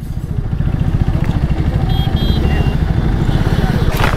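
Yamaha R15 V3's single-cylinder engine idling steadily with the motorcycle at a standstill.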